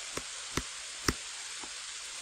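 Steady hiss of the recording microphone with four short clicks, the sharpest just past the middle.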